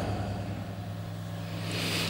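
A low steady hum with faint background noise underneath.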